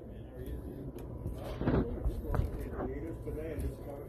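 Faint voices talking over a low steady rumble, with a couple of soft knocks in the middle.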